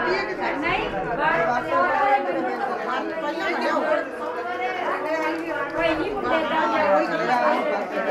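Chatter of a group of people talking at once, many voices overlapping without a break.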